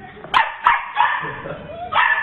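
A small puppy barking in short yaps: two sharp ones in quick succession about a third of a second in, then more just after.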